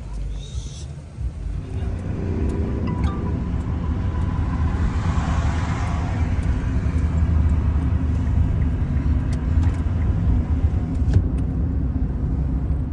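Engine and road rumble inside a moving Kia car's cabin: a steady low drone that sets in about a second and a half in, with a hiss that swells and fades around the middle.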